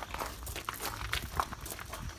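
Footsteps crunching on gravel, several irregular steps.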